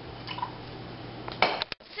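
Soda being poured from a can into a glass measuring cup, a steady pour. It ends about one and a half seconds in with a few sharp clinks and knocks of the can and glass.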